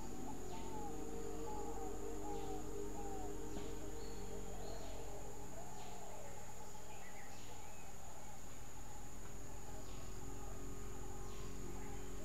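Tropical forest ambience: a steady high-pitched insect drone, with a bird calling a series of short falling notes in the first few seconds and again near the end.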